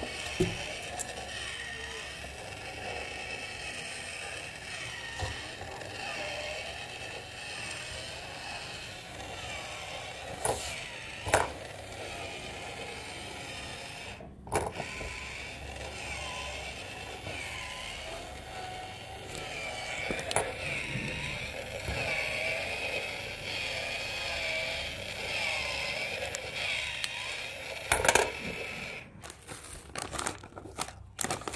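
Coin-eating face bank's small electric motor and plastic gears whirring, the pitch wavering up and down over and over as the chewing mechanism cycles. A few sharp clicks and knocks cut through it.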